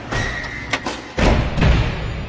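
Sound effects of an animated logo intro: a hissing sweep with a high ringing tone, a sharp click, then two deep thuds about half a second apart, the second the loudest, fading away.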